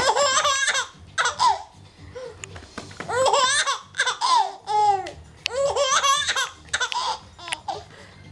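Baby laughing in repeated high-pitched bouts of giggles with short pauses between them, fading out near the end.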